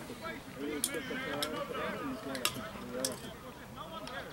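Indistinct chatter of spectators at a rugby ground, with several short, sharp clicks scattered through it.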